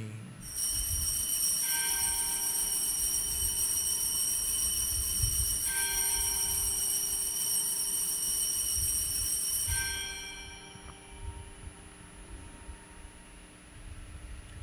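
Altar bells rung at the elevation of the chalice at the consecration: a bright, sustained ringing chord, struck again a few times, dying away about ten seconds in.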